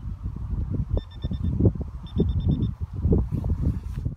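Carp bite alarm on the rod rest giving two quick runs of rapid high beeps, about a second apart, the sign of line being drawn over its sensor. Heavy wind buffeting on the microphone is the loudest sound throughout.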